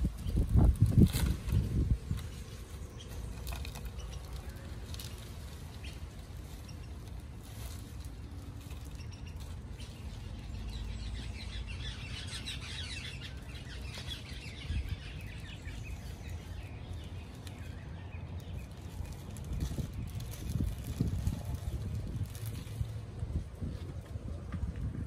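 Potting soil being tipped from a plastic bag into a small plastic plant pot and pressed down by hand: the loudest rustling and bumping comes in the first two seconds, with more handling noise near the end. Birds chirp briefly about halfway through, over a low steady background rumble.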